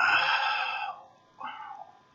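A man sighing: one long breathy exhale that fades after about a second, then a shorter, softer one.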